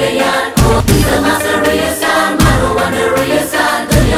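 Telugu film song: a chorus of voices singing over the music, with heavy drum hits about every second and a half to two seconds.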